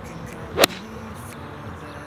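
A golf iron swung through and striking the ball: a brief swish that builds and ends in one sharp crack of impact about half a second in.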